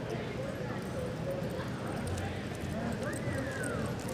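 Soft hoofbeats of a horse loping on arena dirt, under a steady murmur of spectators' voices in an echoing indoor arena.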